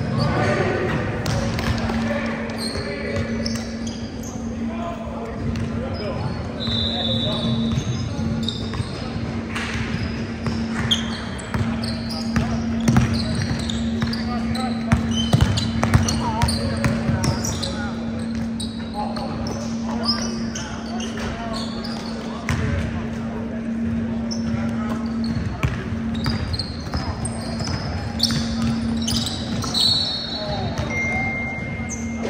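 Basketball game sounds in a large gym: a ball bouncing on the hardwood court, short high sneaker squeaks and indistinct calls from the players, over a steady low hum.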